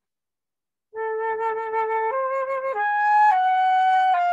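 Concert flute playing a slow phrase of four held notes, starting about a second in: two rising steps, a leap up, then a slightly lower note held.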